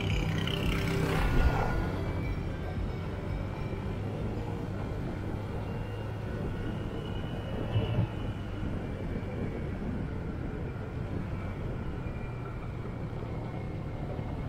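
Motorcycle engine running steadily at cruising speed, with wind and road noise.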